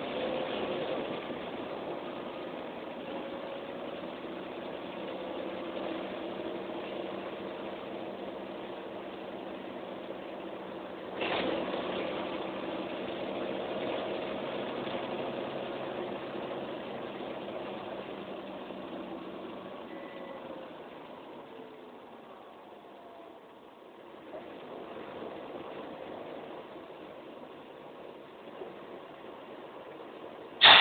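Mercedes-Benz O405N bus heard from inside the cabin on the move: its diesel engine and road noise run steadily, with a sharp knock about eleven seconds in. About two-thirds of the way through, the engine note falls and quietens, then picks up again.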